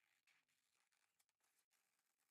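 Near silence, with very faint snips of scissors cutting through folded paper.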